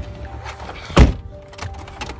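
Background music, with a single loud, heavy thump about a second in.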